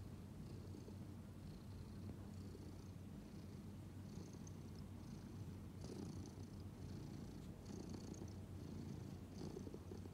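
Orange-and-white domestic cat purring steadily and faintly.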